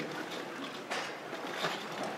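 Low background noise of a crowded room, with a couple of faint brief sounds, one about a second in and one near the end.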